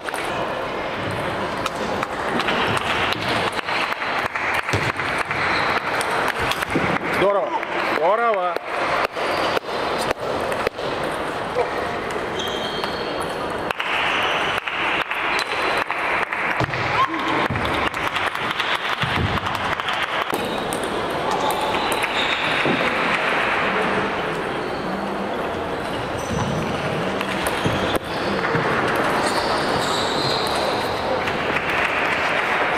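Table tennis ball clicking off the bats and bouncing on the table in a series of sharp taps, over a steady murmur of voices in a large hall.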